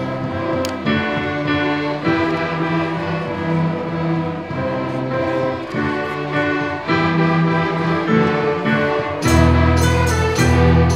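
Student string orchestra playing, violins and cellos bowing sustained notes together. The low notes are thinner for most of the passage and come back in fuller and louder about nine seconds in.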